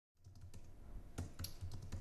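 Fingers typing on a slim aluminium wireless computer keyboard: faint, irregular key taps.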